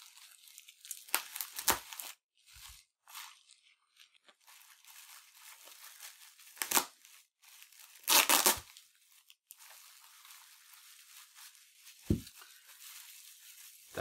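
Plastic bubble wrap crinkling and rustling as it is pulled apart by hand. A few short, loud tearing rips come about a second in, near the middle and, loudest, at about eight seconds, and there is a light knock near the end.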